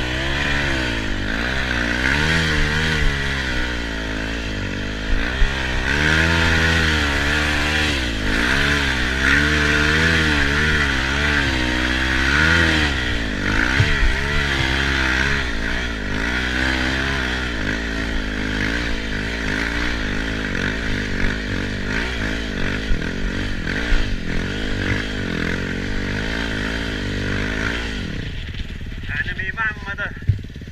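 Enduro motorcycle engine heard from the rider's helmet, revving up and down over and over as the throttle is worked on a climb. Near the end the throttle closes and the engine drops back.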